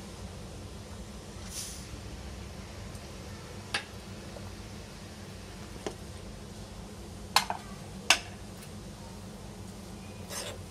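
A few sharp metal clinks of a ladle against the pressure cooker's pot, the two loudest less than a second apart late on, over a steady low hum.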